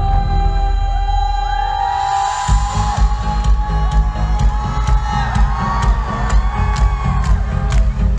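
Live pop music from an arena PA: a woman's sung melody over a full band mix. The heavy bass and beat drop away briefly and come back in about two and a half seconds in, with a steady drum beat after that.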